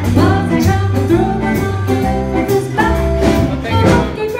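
Live small band playing a bluesy song: electric guitar and bass notes over a steady beat, with a woman singing.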